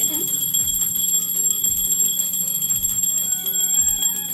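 Temple bells ringing continuously, a steady high ringing with devotional music under it, heard through a smartphone's speaker on a live video call from the temple.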